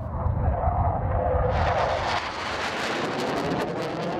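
A fighter jet's engine noise in flight: a deep rumble at first, joined about one and a half seconds in by a loud rushing hiss as the jet passes.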